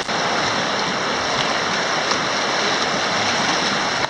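River rapids rushing steadily over rocks.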